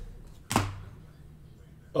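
A single sharp tap about half a second in, from trading cards being handled on the tabletop.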